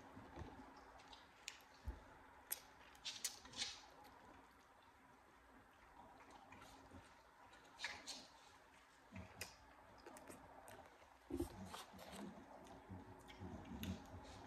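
Faint close-up eating sounds: scattered wet mouth clicks and smacks from chewing a cheeseburger, with a few more clustered around a bite about eight seconds in, over near silence.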